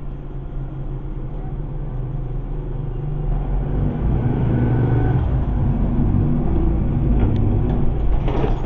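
Motor vehicle's engine running under road noise, growing steadily louder as the vehicle gathers speed.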